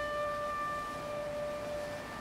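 A single high piano note left ringing, slowly fading away.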